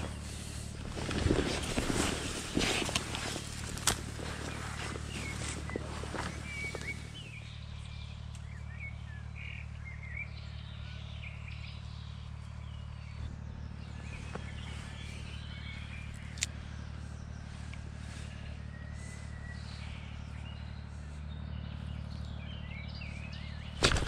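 Small birds chirping and calling in short phrases over a steady low background hum, after a few seconds of rustling and knocking handling noise in the first part.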